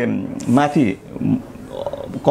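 A man speaking Nepali in short phrases broken by pauses.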